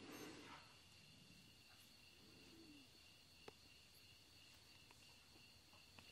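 Near silence: faint room tone with a thin, steady high-pitched hum and a single faint tick about three and a half seconds in.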